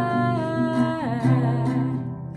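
A woman singing, holding one note and then sliding down in pitch about a second in, over a nylon-string classical guitar.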